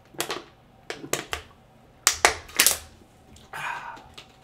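A person drinking from a plastic water bottle: a run of sharp clicking gulps and crackles in small bunches, loudest about two seconds in, then a short breathy rush near the end.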